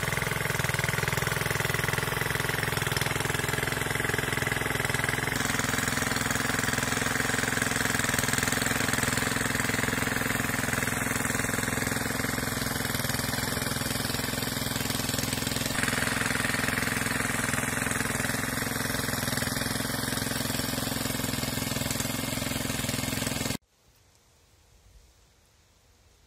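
Small diesel engine of an irrigation pump set running steadily. Its pitch shifts slightly twice, and it cuts off abruptly just before the end.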